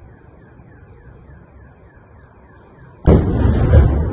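Ammunition depot explosion heard from a distance: a sudden loud blast about three seconds in, followed by a heavy rumble that carries on. Before it, a faint chirp repeats about four times a second.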